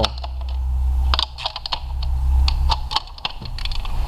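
Hand ratchet clicking in short irregular runs as the E-Torx bolts holding the fuel rail are undone, over a low steady hum.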